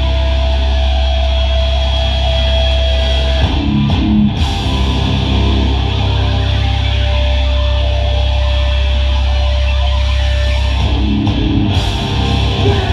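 Hardcore band playing live: distorted electric guitars and bass hold long ringing chords with a high sustained tone over them. The chord changes about three and a half seconds in and again near the end.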